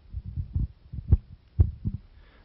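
Handling noise from a handheld microphone being passed from hand to hand: a string of low thumps and rubbing, with two sharper knocks a little after one second and about a second and a half in.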